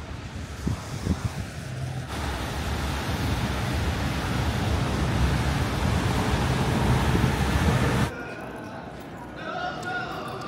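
Outdoor city ambience: a steady rush of traffic and wind on the microphone, growing louder, then cutting off suddenly about eight seconds in to a quieter background with faint voices.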